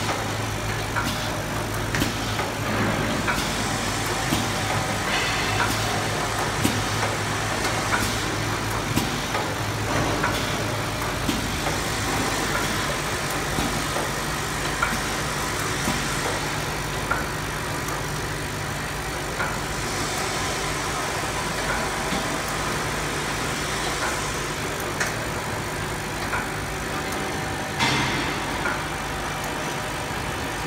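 Soap film wrapping machine running: a steady motor hum under a continual clatter of small clicks and knocks from its feeding and wrapping mechanism, with a louder knock near the end.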